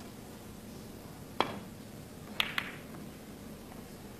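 Snooker cue tip striking the cue ball once, then about a second later two sharp clicks of balls colliding a fraction of a second apart, over a hushed arena.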